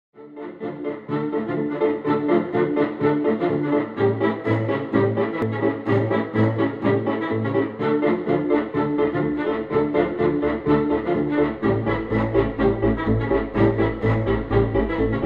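Background music with a steady, fast rhythm, fading in at the start; a deeper bass line comes in near the end.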